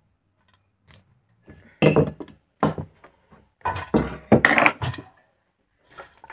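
Stainless-steel mixer-grinder jar and its lid clattering as they are handled and the lid is fitted. A couple of sharp knocks about two seconds in, then a longer run of metallic rattles and knocks about a second later.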